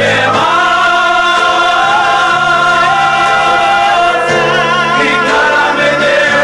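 Several men singing a worship song together, loud, on long held notes with a wavering vibrato.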